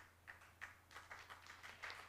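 Faint, scattered clapping from an audience in a hall. It grows denser from about a second in, over a low steady electrical hum.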